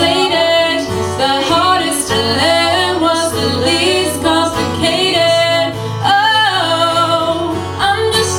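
A singing voice carrying a melody over acoustic guitar accompaniment; no words are picked out.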